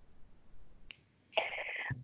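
A single sharp click about a second in, then a short breathy hiss just before speech resumes.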